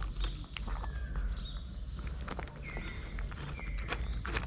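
Tabby cat eating from a plastic tub of dry kibble: rapid, irregular crunching clicks of chewing, with a few short high chirps over a low rumble.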